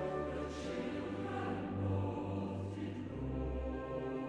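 Mixed chorus and symphony orchestra in a quiet choral passage of a Romantic cantata: the choir sings softly over sustained orchestral chords.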